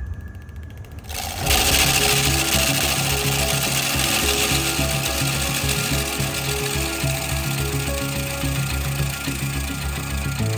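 Background music with a steady bass line and stepping notes. About a second in, a dense rushing hiss joins it and runs on: typical of a bowl gouge cutting maple on a spinning wood lathe.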